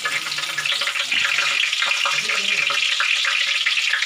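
Banana-leaf parcels of porotta and beef curry sizzling steadily in hot oil in a wide pan, a dense, even crackle of frying.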